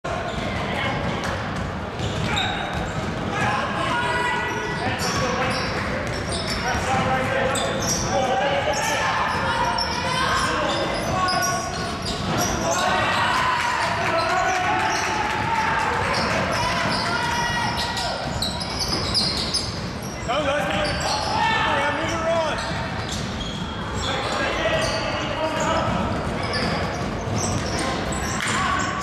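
Basketball game play in a large gym: a basketball bouncing and dribbling on the hardwood court, with players' voices calling out, all echoing in the hall.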